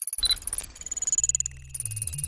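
Sci-fi computer-interface sound effect: a fast stutter of electronic blips and high steady tones, like data processing, with low tones stepping in near the end.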